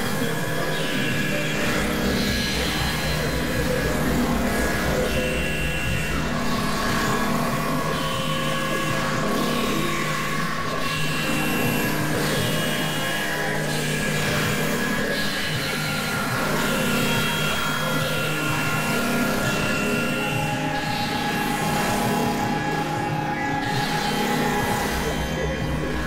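Dense, layered experimental electronic music: many held synthesizer tones and drones stacked over a steady low hum. Short high tones come back every couple of seconds.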